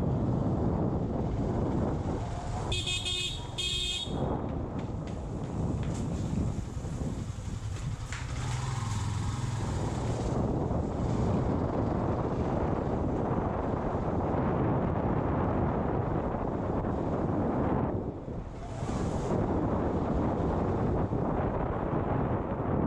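Motorcycle riding along with its engine running and a steady rumble of wind on the helmet-mounted camera's microphone. A horn honks twice in quick succession about three seconds in.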